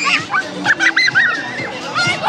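Children shrieking and shouting in excitement, several high voices overlapping in short rising and falling cries.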